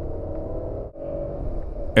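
Steady low road and engine rumble inside the cabin of a moving Toyota Land Cruiser 200, briefly dropping out about a second in.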